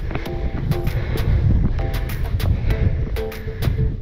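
Wind buffeting the camera microphone, a loud, uneven low rumble, under background music with a steady beat.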